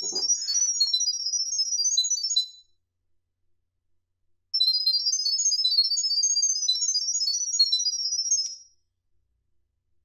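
Smartphone speaker playing rapid runs of short, high-pitched electronic tones that carry the Wi-Fi setup details to a SENS8 security camera by sound. The tones stop about two and a half seconds in and start again about two seconds later for another four seconds.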